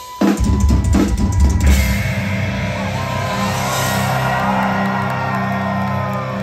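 Live rock drum kit at the close of a drum solo: a few heavy bass drum and tom hits over the first couple of seconds, then the drums stop and a steady low drone holds on with a ringing high wash over it.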